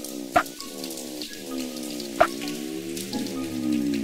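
Opening of an electronic trap-style backing track: a sustained synth chord with a slowly sweeping filter over a steady crackling noise layer, with two sharp percussive hits. It grows louder toward the end.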